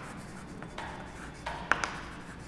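Chalk writing on a blackboard: scratchy strokes, with a few sharp taps of the chalk against the board in the second half.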